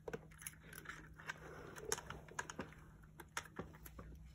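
Cats foraging treats from a plastic puzzle feeder: faint, irregular light clicks and taps of treats and paws against the plastic.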